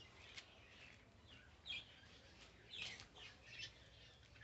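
Faint bird chirps, a few short high calls over near silence.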